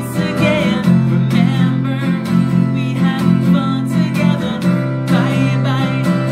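Maton acoustic guitar strummed in a steady rhythm, with a man singing along.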